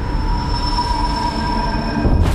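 Sound-effect rumble of a nuclear explosion: a deep, steady roll with high whining tones held over it.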